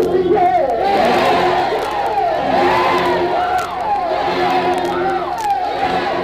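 Church congregation shouting and crying out in praise, many voices overlapping at once.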